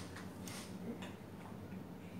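Faint, irregular clicks of computer mice and keys over a low steady hum.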